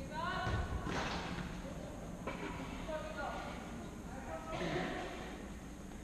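Futsal players calling and shouting across an echoing sports hall, with a short rising call near the start and a dull thud about half a second in.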